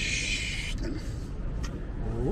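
A person shushing: one sharp "shh" of under a second, then only the low rumble of city traffic.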